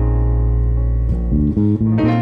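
Electric bass and keyboard playing a gospel-style groove. The bass holds a long low note, then plays a quick run of short notes in the second half, under held keyboard chords.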